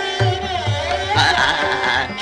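Hindustani classical vocal music in Raag Yaman (Aiman): a male voice singing melismatic phrases over sustained accompanying tones, with tabla strokes about twice a second. The passage grows brighter and fuller in the second half.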